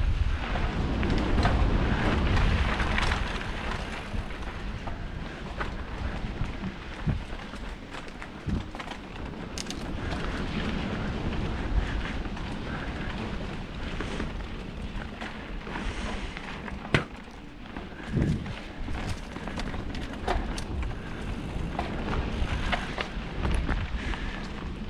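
Mountain bike descending a dirt singletrack: wind buffets the microphone, tyres roll over the dirt, and the bike rattles with frequent sharp knocks over roots and bumps. The wind is loudest in the first few seconds.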